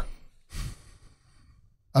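A man's single short breath close to the microphone, about half a second in, between sentences of talk. Then quiet room tone until speech resumes near the end.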